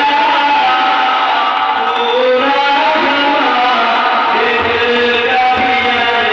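A man singing a devotional Urdu kalaam into a microphone, amplified over a PA system, in long held notes that step and glide in pitch.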